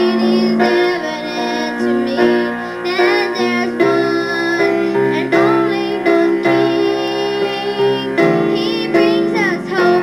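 A woman singing a slow song with vibrato over piano accompaniment.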